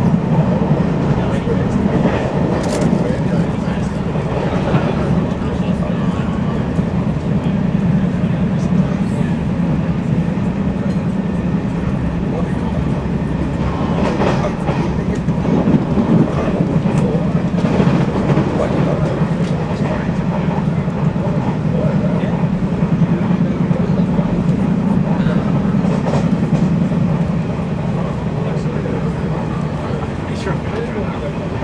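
A commuter train running at speed, heard from inside the carriage: a steady low rumble of wheels on rail with scattered clicks and knocks from the track.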